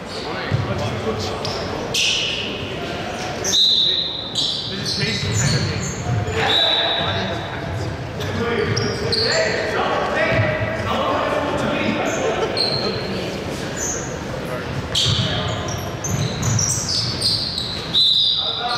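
Basketball game sounds in a large, echoing gym: a ball bouncing on the hardwood floor, sneakers squeaking in short sharp bursts now and then, and players calling out to one another.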